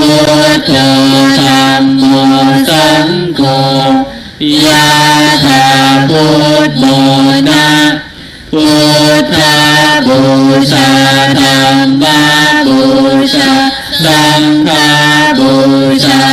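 Male voices chanting a Buddhist chant in steady, held notes that step up and down in pitch, with short pauses for breath.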